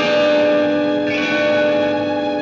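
Film background music: a held, ringing chord, struck again about a second in.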